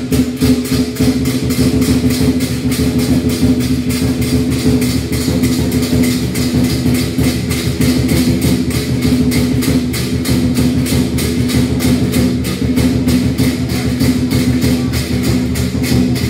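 Lion dance percussion: a drum and cymbals beating a fast, even rhythm of about four strokes a second, with a steady low drone underneath.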